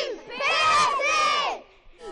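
A group of young girls shouting a short cheer together in unison, lasting about a second and ending well before the end.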